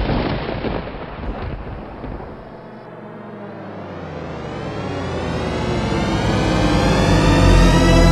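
Thunder rumbling and dying away over the first few seconds after a sudden crack, then a sustained music chord that swells in and grows steadily louder toward the end.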